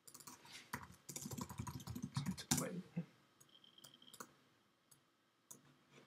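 Computer keyboard typing: a quick run of keystrokes lasting about two seconds, followed by a few scattered single clicks.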